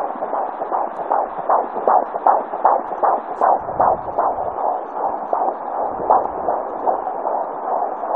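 Handheld fetal Doppler picking up a 19-week fetus's heartbeat: a fast, galloping whoosh of about two and a half beats a second over steady hiss, growing fainter past the middle.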